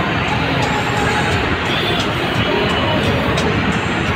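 Music playing loudly from a JBL Boombox portable Bluetooth speaker being carried along a street, with traffic sounds underneath.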